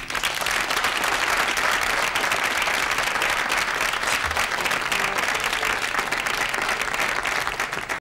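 Studio audience applauding at the end of a song: dense clapping breaks out at once and holds steady.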